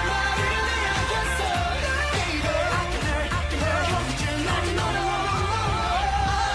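Male voices singing a K-pop song over a pop backing track with a steady, heavy bass beat.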